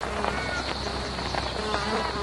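Hot, dry outback ambience: a steady, high insect buzz with scattered short chirps over it.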